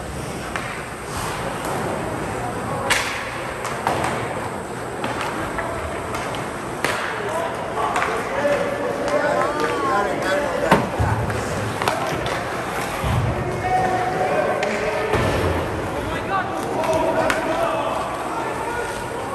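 Ice hockey game in an echoing indoor rink: skates scraping on the ice and sharp clacks of sticks and puck, with spectators' voices and shouts throughout.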